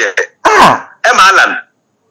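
A man's voice in a few short utterances, with a rough, falling sound about half a second in like a cleared throat, then silence near the end.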